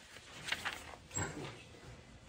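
Two quiet, brief sounds from a man handling a book: a short rustle about half a second in, then a short low murmur in his throat a little after one second.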